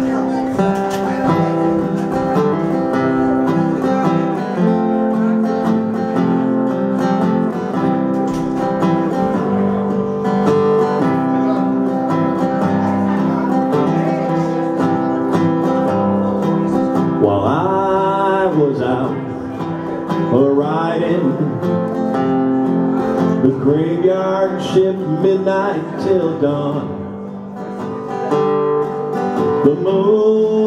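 Amplified acoustic guitar playing the instrumental introduction to a country song. From about halfway through, a second melodic line with swooping, sliding pitch plays over the guitar.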